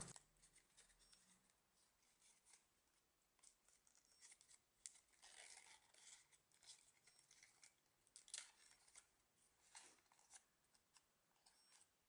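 Near silence, with faint, scattered crinkles and rustles of origami paper being refolded along its existing creases by hand, mostly from about four seconds in.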